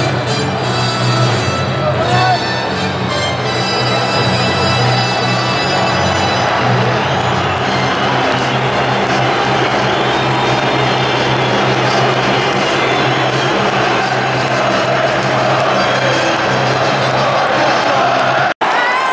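Music over a stadium public-address system, mixed with the noise of a large football crowd.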